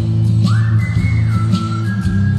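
Live band music with a heavy, steady bass line and regular cymbal strikes; about half a second in, a high sustained melody note slides up and is held, then steps to a second held note.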